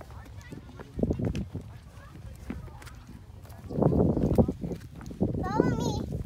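Scuffing and rustling of a small child scrambling over grass and rocks, louder about two-thirds of the way through. Near the end comes a brief wavering, high-pitched vocal sound from the child.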